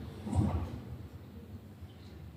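A short dull thud about half a second in, over quiet room tone.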